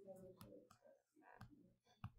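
Near silence: a few faint clicks of a stylus tapping on a tablet screen as it writes, with a faint voice in the background.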